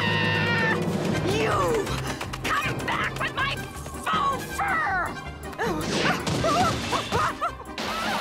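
Cartoon soundtrack: music with a character's wordless cries and gliding vocal sound effects, and a crash of breaking ice about halfway through.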